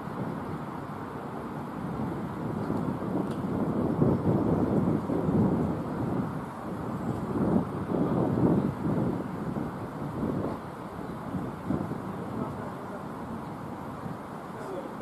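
Wind gusting against the microphone: a low rumble that builds, surges irregularly for several seconds, then dies back.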